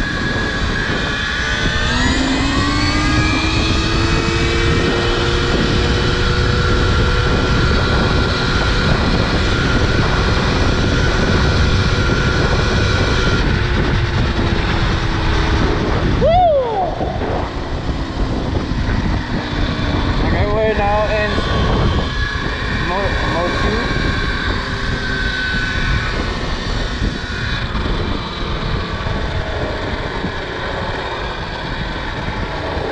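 KTM Freeride E-XC electric motor whining as the bike pulls away, its pitch rising over the first few seconds and then holding steady, over a steady rush of wind. About halfway through the whine swoops and drops away briefly, then returns.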